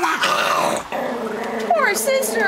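Small pet dog growling at the other dog in a jealous squabble over attention, rough at first and then a steadier, buzzing growl through the second half.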